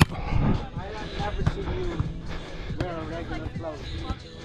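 A volleyball struck hard by hand at the very start for a serve, one sharp smack. Then a steady low wind rumble on a muffled, wind-shielded microphone, with faint players' voices calling during the rally.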